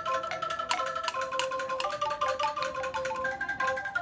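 Bamboo angklung being played: a quick melody of short pitched notes, each a rattling tone from the shaken bamboo tubes, moving up and down in steps.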